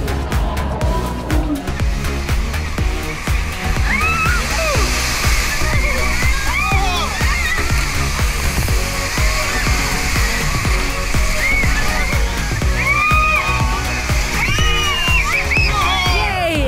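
Background music with a steady beat over the rush and splash of whitewater on a river-rapids raft ride, with excited voices calling out.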